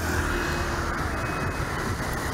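Road traffic of motorbikes and a heavy truck, a steady engine drone with a low hum.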